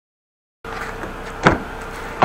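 A steady background hum begins about half a second in, then a single sharp click about a second and a half in: a car door latch releasing as the outside handle is pulled.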